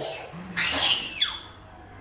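A toddler's short, high-pitched squeal during play, sliding down in pitch at its end, about half a second in.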